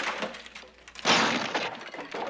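A wooden chair being smashed apart, with a loud crash about a second in.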